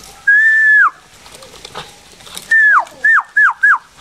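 A person whistling to call a dog: one long whistle that drops in pitch at its end, then a falling whistle and three short, quick falling whistles near the end.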